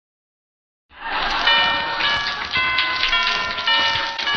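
Silence for about the first second, then organ music, the opening theme of a radio show, playing sustained chords that change every half second or so.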